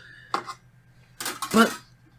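A few light plastic clicks and knocks as a 3D-printed wall hook rack is handled, followed by a breath and a short spoken word.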